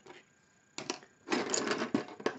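Handling noise: a couple of sharp clicks about a second in, then a short scratchy rustle near the end, from hands moving the sketchbook, needles and marker.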